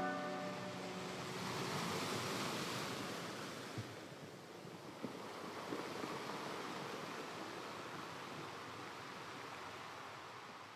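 The last piano notes die away at the start, leaving a soft rushing wash of noise that swells about two seconds in and then slowly fades out, with a few faint clicks.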